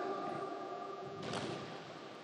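A single boot stamp from the marching cadets of the honor guard a little past halfway, over faint steady tones that fade away.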